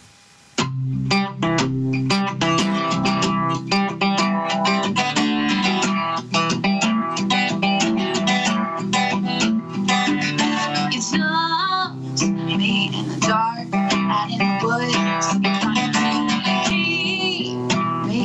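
Acoustic guitar strummed in a steady rhythm, starting about half a second in, with a woman's voice singing over it in places.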